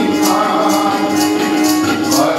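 Sikh kirtan: men singing together to a harmonium holding a steady note, with percussion striking a steady beat about twice a second.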